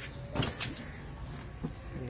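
Packaging handling noise as an ink bottle is taken out of the foam and plastic wrap inside a printer carton: a brief rustling scrape about half a second in, then a fainter short knock later on.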